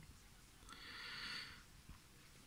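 A faint breath near the microphone: one soft hiss lasting under a second, in the middle of a pause in speech.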